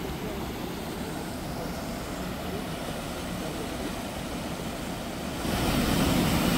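Steady rush of a waterfall and river rapids, an even hiss that gets louder and brighter about five and a half seconds in.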